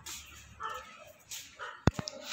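German Shepherd dog giving two faint, short vocal sounds, followed by a single sharp click near the end.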